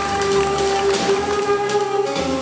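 Jazz music with a saxophone holding long notes over a light beat.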